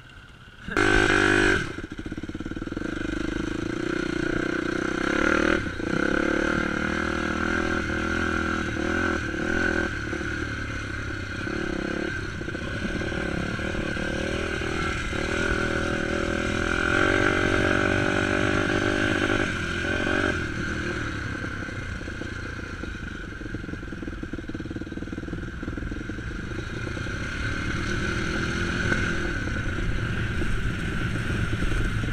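A dirt bike engine under way, heard from the bike itself, with a short loud rev about a second in. After that the engine note climbs and drops several times as the rider works the throttle and shifts gears.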